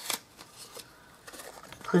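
Stiff cardstock rustling and scraping as a small handmade paper gift bag is opened by hand, with a brief sharp rustle just at the start and quieter handling after.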